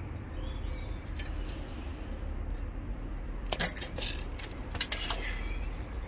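A handful of sharp clicks and knocks from a steel plate and tape measure being handled, over a steady low rumble. A high, rapid trill sounds twice in the background, about a second in and again near the end.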